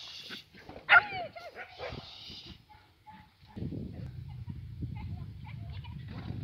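A dog gives one sharp, high bark about a second in, falling in pitch. From about halfway there is a steady low rumble.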